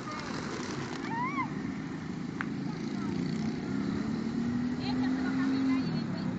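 Outdoor crowd chatter with a motor vehicle going by, its low engine note rising slowly through the second half and loudest near the end. A few short high chirps come early on.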